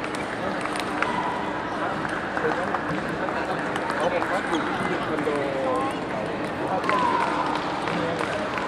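Echoing chatter of many voices filling a busy table tennis hall, with scattered sharp clicks of balls striking paddles and tables.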